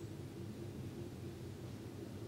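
Quiet room tone: a steady low hum under a faint hiss, with no distinct events.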